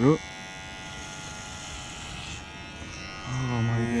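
Cordless electric hair clippers running with a steady buzz while shaving long hair off a scalp.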